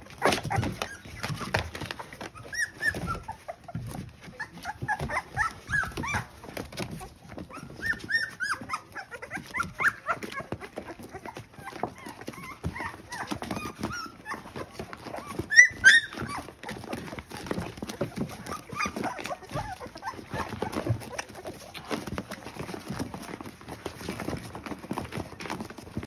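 Three-week-old Bully puppies whimpering and squeaking in many short, high cries, amid soft rustling and clicks as they crawl over each other. One sharper, louder squeal comes a little past the middle.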